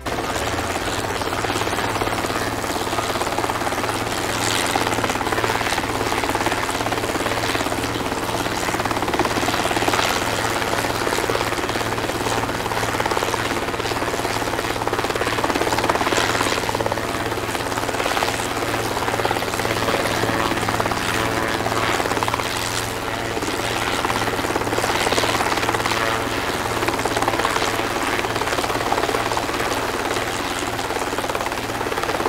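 Multirotor camera drone's propellers buzzing steadily in flight: a constant drone of several low tones over a whirring noise.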